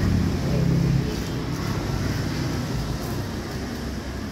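A steady low mechanical rumble, like an engine running, a little louder for about the first second.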